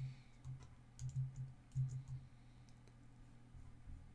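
Computer keyboard being typed on: scattered keystrokes and clicks, busiest in the first couple of seconds, then sparser.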